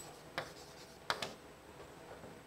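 Chalk writing on a chalkboard: a few faint, short taps and scratches as letters are written, the clearest about half a second and just over a second in.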